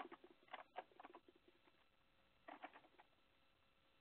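Near silence, with a few faint short sounds in the first second and again around two and a half seconds in.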